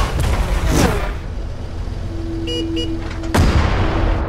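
Sound-design effects laid over a video intro: a deep boom at the start, a falling whoosh, two short beeps over a steady tone past the middle, and another heavy boom near the end.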